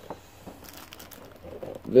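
Plastic packaging crinkling as a boxed vinyl figure is turned over in the hands: soft, scattered crackles.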